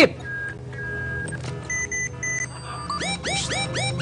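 Electronic science-fiction sound effects: a steady low hum with a few short beeps, then from about three seconds in a fast run of rising swooping tones, about four a second.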